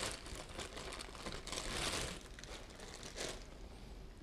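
Clear plastic bag crinkling in irregular bursts as it is handled and pulled off a telescope camera, loudest about two seconds in.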